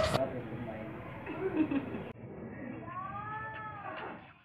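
A cat meowing once, a single long call that rises and then falls in pitch, in the second half, after some talking voices.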